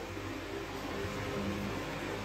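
A kitchen fan running: a steady whirring noise with a faint low hum.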